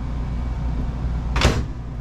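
A Furrion over-the-range microwave door is pushed shut and latches with one sharp click about one and a half seconds in, over a steady low hum.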